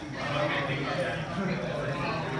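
Indistinct chatter of voices in the background, with no clear words.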